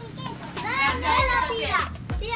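Children's voices talking, with no other clear sound standing out.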